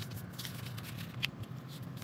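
A sheet of paper being folded in half and creased by hand: quick crisp rustles and crackles, the sharpest about a second and a quarter in.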